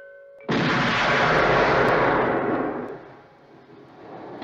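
A single gunshot sound effect about half a second in: a sudden loud blast that dies away over about two seconds, cutting off a held chiming tone.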